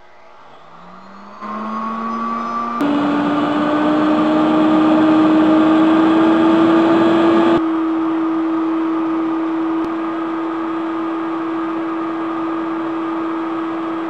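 Electric blower motor of a homemade wet-scrubber air filter starting up, its whine rising in pitch over the first few seconds, then running at a steady pitch.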